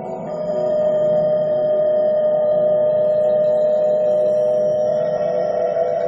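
Tibetan singing bowls ringing in long, steady tones layered over one another. A new bowl note sounds about half a second in and rings on, its low hum the loudest tone, with fainter high overtones above it.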